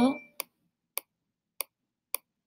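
Three sharp, isolated clicks about half a second apart, made as handwriting strokes are put down with a digital pen on a screen, after the tail of a spoken word.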